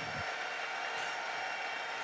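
Congregation applauding: a steady patter of many hands clapping.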